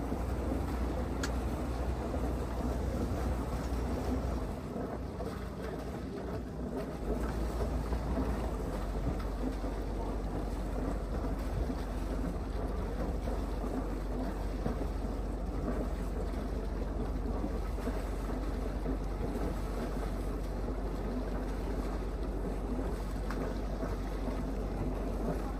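Low steady rumble of a river cruiser's engine running, mixed with wind on the microphone and water noise. The rumble drops away for about two seconds, starting around four and a half seconds in, then comes back.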